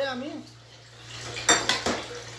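A metal lid set onto a metal cooking pot: two sharp metallic clinks with a brief ring, about a second and a half in, a moment apart.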